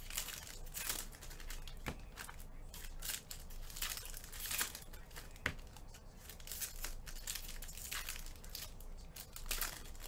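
Foil trading-card pack wrappers being torn open and crinkled by hand, an irregular run of crackles and rips.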